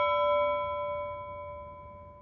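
A single struck bell tone ringing out with several overtones and fading slowly.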